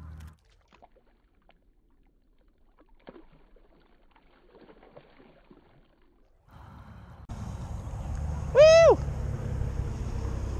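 Near silence for the first six seconds or so, with a few faint ticks. Then a steady low outdoor rumble comes in, and near the end a single loud honking call rises and falls in pitch.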